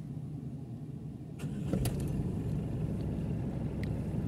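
Chevrolet Tavera's engine starting about a second and a half in: a brief crank with two sharp clicks, then a steady idle.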